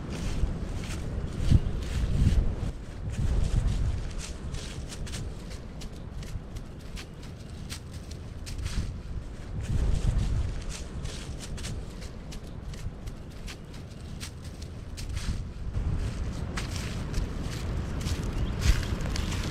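Footsteps crunching through dry leaf litter, mixed with repeated clicks of trekking pole tips striking and pushing off the ground in walking rhythm.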